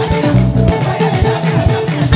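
Live praise band playing, with guitar and bass guitar over a steady beat.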